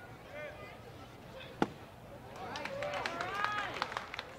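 A single sharp pop of a pitched baseball smacking into the catcher's mitt about a second and a half in, over faint chatter of voices in the ballpark.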